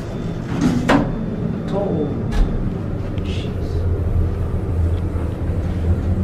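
Schindler traction elevator cab travelling, heard from inside the closed car: a steady low hum of the ride that grows stronger in the second half, with a few short clicks and a dull thump early on.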